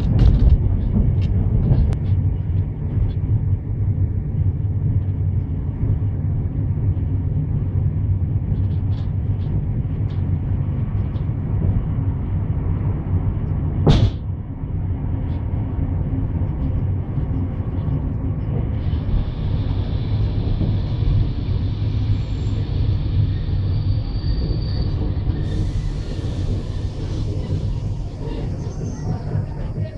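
Steady low rumble of a railway passenger carriage rolling along the track, heard from inside the carriage, with one sharp click about halfway through.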